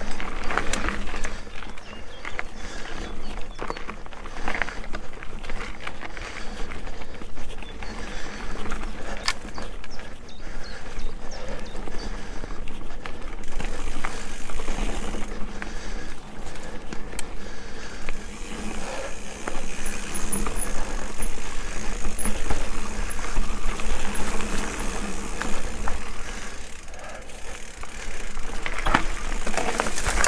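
Electric mountain bike ridden along a rough dirt singletrack: steady tyre and trail noise with a low rumble, and frequent clicking and rattling from the bike over the bumps.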